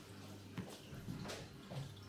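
Quiet room with a steady low hum and a few faint taps and knocks.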